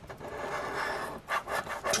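A coin scraping the latex coating off a scratch-off lottery ticket. There is a continuous rasping scrape for about a second, then several short quick strokes.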